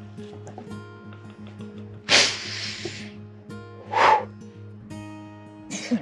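Background music with steady held notes. Over it, a woman hisses sharply through clenched teeth for about a second, starting about two seconds in, then gives a short yelp about four seconds in, a reaction to ice-cold meltwater on her feet.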